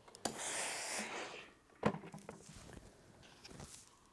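Hand iron pressing small patchwork pieces on a felt pressing mat: a hiss of about a second near the start, then a single sharp click, then faint rustling of fabric.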